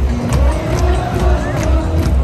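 Stadium PA music with a heavy bass beat over a cheering football crowd.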